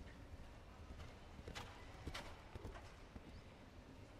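Show-jumping horse's hoofbeats on soft arena sand at a canter, faint, with a few sharper hoof strikes around the middle.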